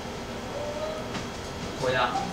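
A pause in speech filled by steady room noise, with a man starting to speak again near the end.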